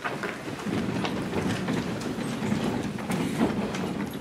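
A roomful of people getting up from their seats: chairs shifting and feet shuffling, a steady low rumble with a few light knocks.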